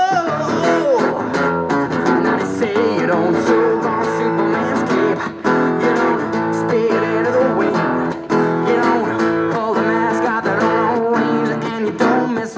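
Acoustic guitar strummed in a steady rhythm, with a young male voice singing over it in drawn-out, sliding notes.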